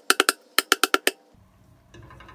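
Aluminium cake tin full of batter tapped repeatedly on a stone countertop to knock out air bubbles. Sharp knocks with a brief metallic ring: a quick run of four, then six more about two-thirds of a second in, stopping just after a second in.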